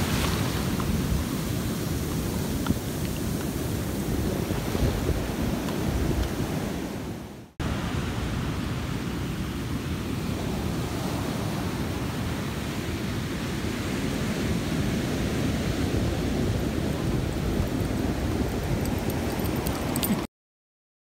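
Ocean surf washing up on a sandy beach, with wind buffeting the microphone. The sound drops out sharply for a moment about seven and a half seconds in, then the same surf and wind carry on.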